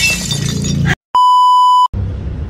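A drinking glass shattering, its crash trailing off over the first second. After a brief silence, a steady electronic beep sounds for under a second and cuts off suddenly.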